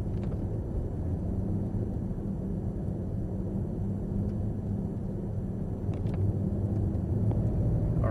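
Cadillac CTS-V's V8 running at part throttle with tyre and road noise, heard from inside the cabin; a steady drone that rises slightly near the end as the car picks up speed.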